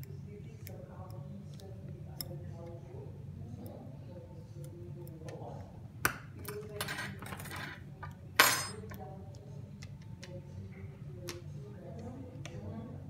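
A few sharp clatters and scrapes of a small metal hand tool against the workbench and the heat-shrink-covered electronics, the loudest about eight and a half seconds in, over a steady low hum.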